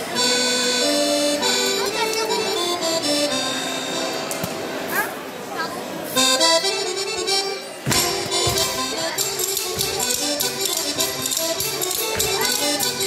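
Live accordion playing a Portuguese folk dance tune in steady held notes, with sharp rhythmic beats joining about two-thirds of the way through.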